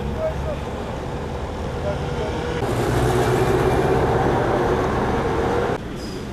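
Road traffic ambience: a motor vehicle engine running steadily, growing louder about halfway through and cut off sharply near the end.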